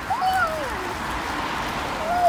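A young child's high, drawn-out wordless cry that rises and then falls, over the steady hiss of traffic on a wet road.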